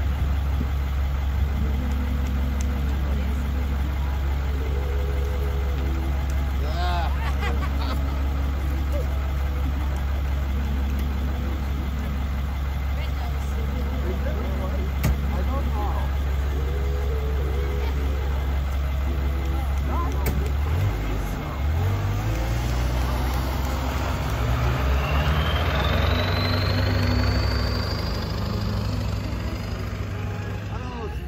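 Tow truck's engine idling steadily, then about two-thirds of the way through its note climbs as it revs and pulls away, with a high whine rising for several seconds before the sound fades near the end.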